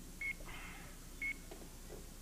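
Game-show countdown clock beeping once a second as the last seconds of a 60-second bonus round run out: two short, high beeps a second apart.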